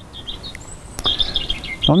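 Small birds chirping in quick runs of short, high calls that grow busier about halfway through, with one sharp click near the middle.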